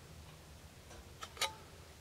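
Two light metallic ticks a little over a second in, the second louder, as digital calipers are repositioned against a stainless steel square; otherwise quiet room tone.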